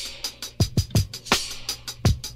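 Electronic drum loop playing through Xfer's OTT multiband upward/downward compressor, set to a low depth of 16%. Deep kick-drum thumps and bright high percussion hits fall in a steady groove.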